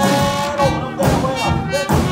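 Live small jazz band playing a slow early New Orleans–style blues, with electric guitar, drums and horns behind a man singing.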